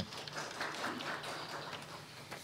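Faint, even applause.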